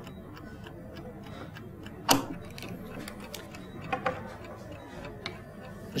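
Analog chess clock ticking steadily in a fast, even run of light ticks. A few brief louder sounds break in: a sharp one about two seconds in, a short one near four seconds and a small click just after five seconds.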